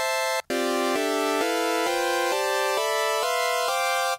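Ableton Meld synthesizer's chord oscillator playing a chord on each note of a rising C major scale, about three chords a second, each chord tuned to the notes of the C major scale. The sound drops out briefly about half a second in.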